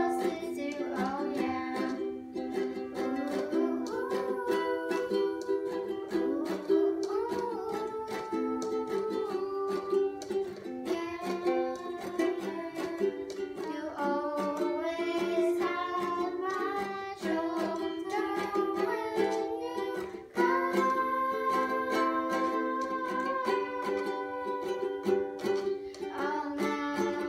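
Two girls singing a pop song to a strummed ukulele, with a short break in the playing about twenty seconds in.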